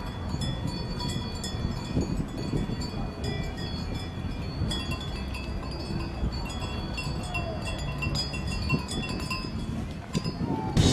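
Cowbells on grazing cattle ringing: several bells at different pitches jangling irregularly as the cows move.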